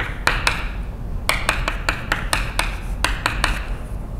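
Chalk writing on a blackboard: a quick, irregular run of short taps and scratches as the symbols are written, over a steady low room hum.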